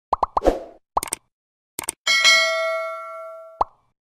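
Sound effects for an animated title: a quick run of short blips that drop in pitch during the first second, a couple of clicks, then a bright chime that rings and fades for about a second and a half, cut off by one last blip.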